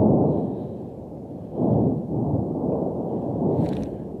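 Deep rumbling booms of an erupting volcano throwing up lava fountains. The rumble is loudest at the start, swells again just over a second and a half in, and eases toward the end.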